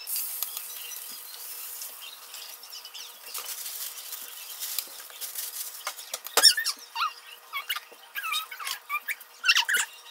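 Faint sizzling as a dipped slice of bread goes onto a hot electric griddle, followed from about the middle onward by a series of short, sharp high squeaks.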